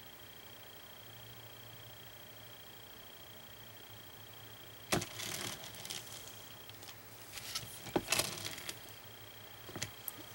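Quiet room tone with a faint steady high whine. About halfway a sharp click and a second of rustling, then more rustling and another click a little later, from hands handling a paintbrush over the painting board.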